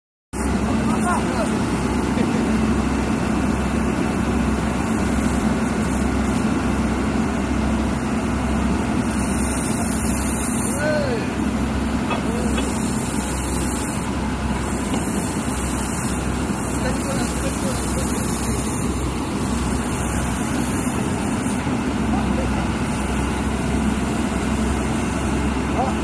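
Crawler water-well drilling rig running under power, a loud, steady mechanical din of engine and drilling machinery.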